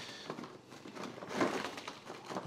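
Lumps of coal tipped from a bucket, dropping and tumbling onto cardboard with a few soft knocks and scrapes.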